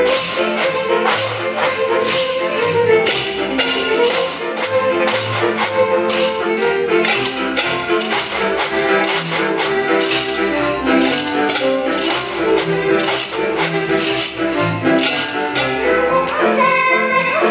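A folk string band with fiddles plays an instrumental passage while kitchen-utensil percussion, pot lids and a washboard played with wooden sticks, keeps a steady beat of about two to three strokes a second.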